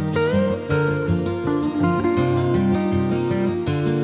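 Guitar music: a sustained lead melody built on a B-flat major arpeggio, with a short upward slide about a quarter second in, over plucked guitar notes underneath.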